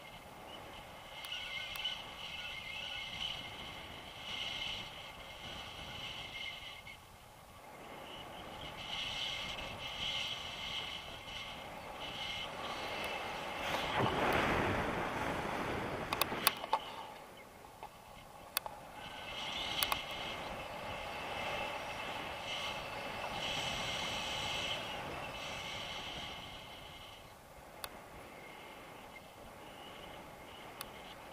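Wind rushing over a camera microphone during a tandem paraglider flight, swelling to a strong gust about halfway through. A high whine comes and goes in stretches, and a few sharp clicks sound, mostly in the second half.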